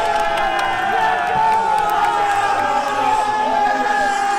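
A group of men shouting and cheering together in a celebration huddle, many voices at once, with one loud held cry running over the others.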